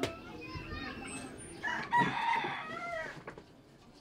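A rooster crowing in the background, one arching call about two seconds in, fainter than the nearby speech, with weaker scattered calls before it.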